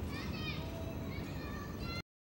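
High-pitched children's voices calling out over steady street noise.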